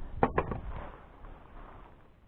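Two quick sharp knocks close together, then a softer scuffing rustle that fades away: a plastic fish-measuring board being handled against a kayak's hard plastic deck.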